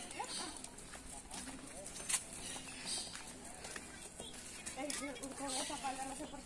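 Footsteps at a walking pace on a concrete street, with flip-flops slapping and clicking, and one sharper click about two seconds in. A woman's voice says a word near the start and talks again near the end.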